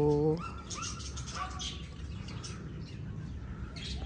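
A brief, loud pitched call right at the start, then small birds chirping several times over a steady low background.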